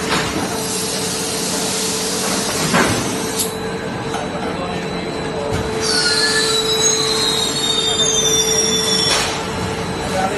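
Plastic sheet extrusion line running, with a steady machine hum that carries a constant tone as its rollers wind the clear sheet. About six seconds in, high squeals glide slowly downward in pitch for around three seconds, and a few sharp knocks are heard.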